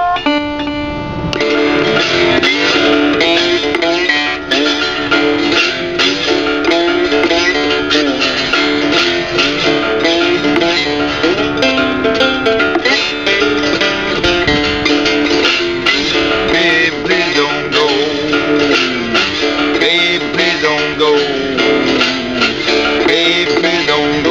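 A resonator guitar rings out briefly at the start, then a three-string cigar box guitar is played slide-style: quick fingerpicked blues notes with gliding slide notes.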